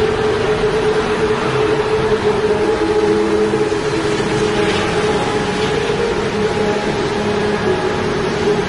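Steady city traffic noise with a constant droning hum.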